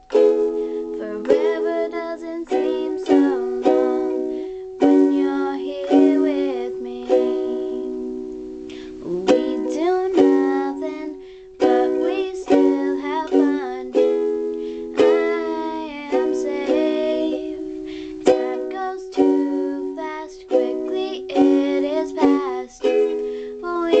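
Ukulele strummed in steady chords, with a girl's voice singing a melody over it.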